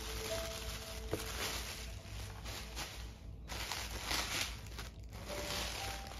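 Tissue paper rustling and crinkling unevenly as it is crumpled and lifted out of a cardboard box, with a couple of brief pauses.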